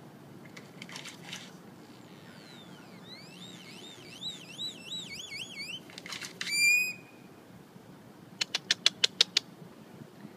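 Great-tailed grackle calling: a falling whistle turns into a warbling whistle that rises and falls several times, then comes a harsh note about six seconds in. Near the end it gives a rapid run of about eight sharp clicks, the loudest part, the typewriter-like clicking this bird is known for.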